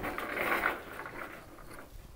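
Shopping cart rattling as it rolls across a tiled store floor, fading as it moves away.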